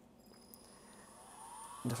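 Desktop CNC mill spindle starting and spinning up toward a set 12,000 RPM: a faint whine that rises in pitch and grows louder from about a second in.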